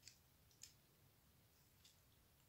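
Three faint clicks of a small plastic 1/6-scale M60 machine gun accessory being handled in the fingers, the loudest about half a second in; otherwise near silence.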